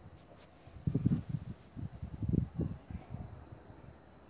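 High-pitched insect chirping, pulsing evenly about three to four times a second, steady in the background. Louder low, muffled sounds come about a second in and again between two and three seconds in.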